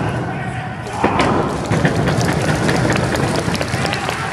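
Thuds of wrestlers' bodies hitting the wrestling ring's canvas mat, a few sharp impacts, among shouting voices.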